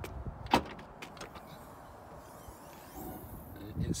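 Ford Focus hatchback tailgate being opened: a single sharp click of the latch release about half a second in, then the hatch lifting near the end.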